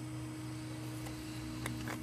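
Steady low electrical hum over quiet room tone, with a faint click near the end.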